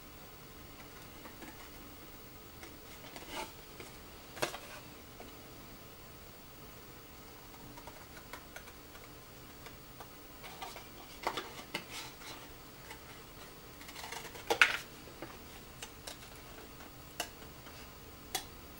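Scissors cutting a paper pattern sheet: faint, irregular snips and blade clicks, a few louder ones in small clusters about a third of the way in, around the middle and shortly before the end.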